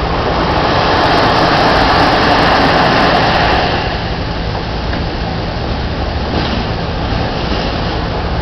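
Surf washing onto a sand beach: a steady noise of waves that swells about a second in and eases off at about three and a half seconds, over a low rumble.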